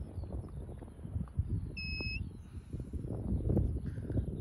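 Wind rumbling on the microphone with bumps of equipment being handled, and one short, steady electronic beep about two seconds in.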